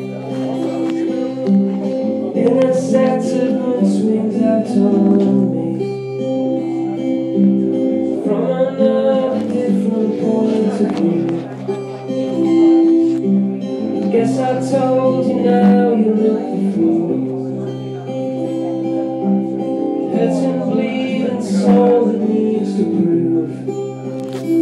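Acoustic guitar strummed live, sustained chords changing every second or two in an instrumental stretch between sung lines of a song.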